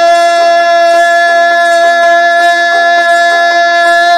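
A male Baul singer holding one long, steady sung note, reached by a quick sliding run just before.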